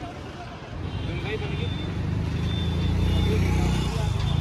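Low rumble of a road vehicle running, growing louder about a second in, with faint voices underneath.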